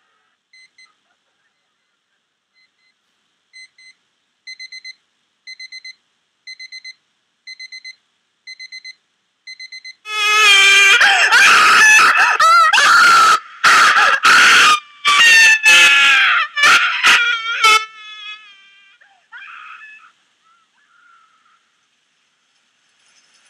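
Electronic sound from a Max MSP patch driven by an Arduino ultrasonic distance sensor: first short high beeps in quick groups of four, about one group a second. Then, about ten seconds in, a loud, buzzy synthesized tone starts, its pitch sliding and wobbling and cutting in and out until it stops a few seconds before the end.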